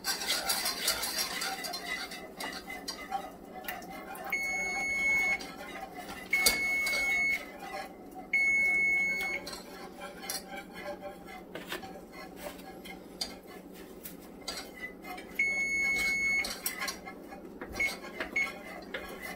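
A metal whisk clicks and scrapes steadily in a small saucepan of thickening flour-and-cream sauce. An electric range's electronic timer beeps over it: three beeps about a second long and two seconds apart, starting about four seconds in, then one more beep a few seconds before the end.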